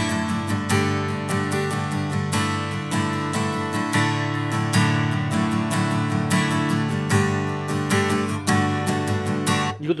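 Cort LUCE-LE BW acoustic guitar strummed in a brisk, steady rhythm of full chords, its unplugged sound picked up by a condenser microphone rather than the pickup. The strumming stops just before the end.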